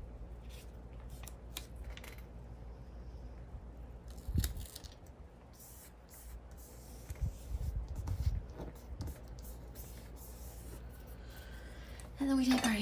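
Hands handling a paper planner page and a clear sticker on a tabletop: light rustles and taps, with a single knock about four seconds in and a run of soft knocks a few seconds later as the sticker is pressed and smoothed down.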